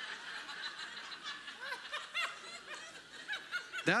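Audience laughing softly: many scattered chuckles from a crowd in a large room, in response to a joke.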